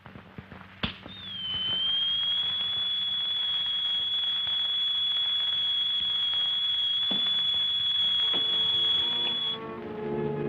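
Shortwave radio receiver clicked on about a second in, then a steady high-pitched whistle over static hiss that holds until shortly before the end: an open channel with no reply to the call.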